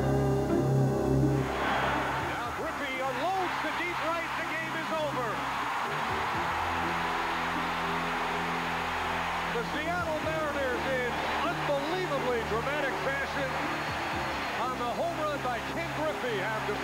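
Slow background music with long held low notes under a large ballpark crowd cheering and shouting, which swells in about a second and a half in and keeps up.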